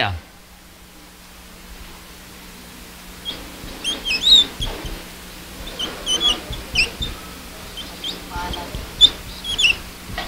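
Whiteboard marker squeaking against the board as Arabic script is written: short high chirps in clusters from about three seconds in, over a steady low hum.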